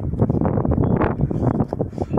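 Wind buffeting the microphone on an exposed hilltop: a loud, uneven rumble with crackling gusts.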